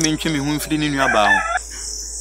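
A man's drawn-out vocal exclamation lasting about a second and a half, rising in pitch near its end, over the steady chirring of crickets.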